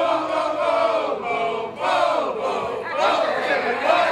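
A line of fraternity men chanting and shouting together in unison, in several loud shouted phrases, with the noise of a large crowd behind them.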